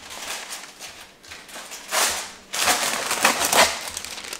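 Parchment paper being pulled off its roll and handled, rustling and crinkling in uneven bursts, loudest about two seconds in and again near the end.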